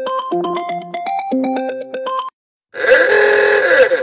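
A phone ringtone melody of bright, evenly struck notes plays and stops about two seconds in. After a short gap comes a loud, harsh, voice-like sound with sliding pitch, lasting just over a second.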